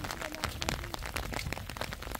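Light patter and irregular small clicks on a wet asphalt road, from rain and the family's footsteps, with a low wind rumble on the microphone.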